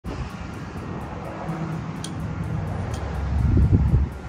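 Wind buffeting the microphone, an uneven low rumble that swells louder near the end.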